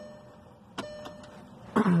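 Ignition switched on in a 2012 Volkswagen Jetta 2.0: a click, then a steady whine of about a second from the electric fuel pump priming the fuel rail before the first start of a freshly rebuilt engine.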